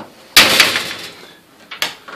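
A single sudden clunk from an open electric oven with a jar on its cookie sheet, fading over about a second, then a lighter click near the end.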